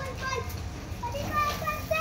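A young child's high-pitched voice talking in short phrases, once at the start and again through the second half.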